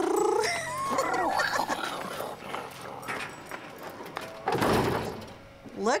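A school bus's large tilt-forward hood swings down and shuts with a heavy thud about four and a half seconds in, after a stretch of talk.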